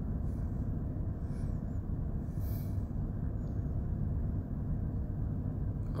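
Steady low machinery rumble with a hum, running at an even level throughout.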